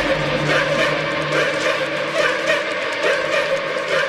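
Instrumental music playing a quieter passage of sustained tones; the low bass drops away about a second in.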